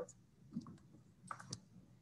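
Quiet room with a few faint clicks, two of them close together about a second and a half in.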